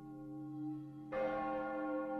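A deep bell tolling. One stroke is already fading, and a fresh stroke lands about halfway through and rings on with a long, slowly fading hum.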